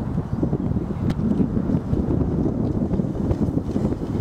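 Wind buffeting the camera microphone: a steady low rumbling noise, with one faint click about a second in.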